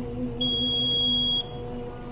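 An imam's voice holding one long, steady low note of Quran recitation during congregational prayer. About half a second in, a high electronic beep sounds over it for about a second, then stops suddenly.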